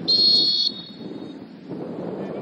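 Referee's whistle: one short, sharp blast of about half a second that stops abruptly.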